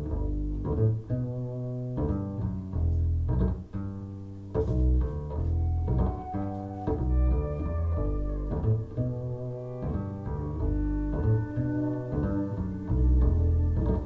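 Music played back through a pair of Bowers & Wilkins 706 S2 bookshelf speakers in a listening room, with a strong, deep bass line of distinct notes.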